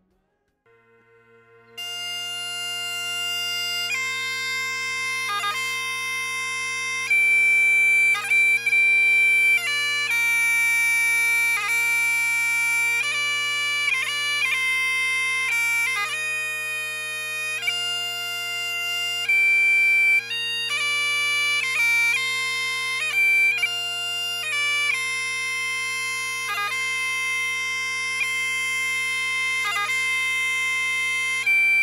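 Great Highland bagpipes starting up: the drones come in first with a steady hum, and about two seconds in the chanter begins a melody over them. Longer held notes are broken by quick grace notes.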